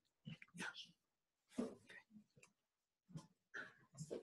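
Faint, intermittent sounds at a lectern microphone, in three short spells: low off-mic voices and paper handling.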